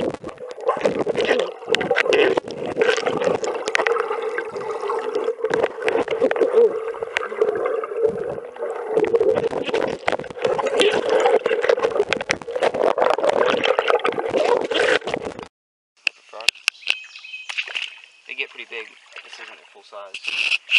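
Muffled water gurgling and sloshing over a wet, submerged camera microphone after a jump into a creek swimming hole, with a steady hum beneath it. The sound cuts off suddenly about fifteen seconds in.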